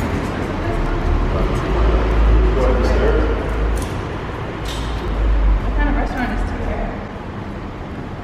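Indistinct talking among a few people walking together, over a low rumble that comes and goes, with a few short clicks.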